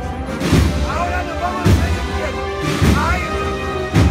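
Spanish wind band playing a slow processional march, with a steady bass-drum beat roughly once a second under the melody.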